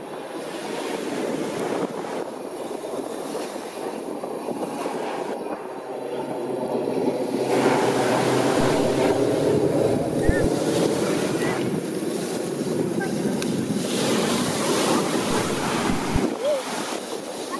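Four-engine turboprop drone of the Blue Angels' C-130 Hercules 'Fat Albert' flying overhead, a steady rumbling roar that grows louder about halfway through as it passes.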